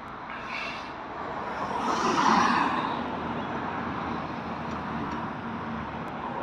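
Street traffic noise, with a vehicle passing close by: its noise rises to a peak about two seconds in and then eases back into a steady traffic hum.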